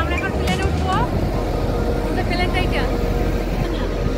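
A woman speaking two short phrases over a steady low rumble and hiss of outdoor noise on an airport apron.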